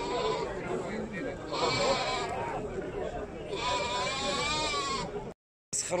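Sardi rams bleating: two calls, the second longer and quavering, over the murmur of a crowd.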